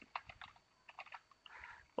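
Faint keystrokes on a computer keyboard: a quick, irregular run of taps as a word is typed out.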